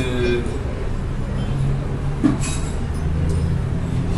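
Steady low hum and rumble of the room's background noise, with a man's drawn-out 'er' trailing off at the start.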